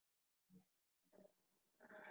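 Near silence over an online call, with a few very faint, brief voice-like murmurs.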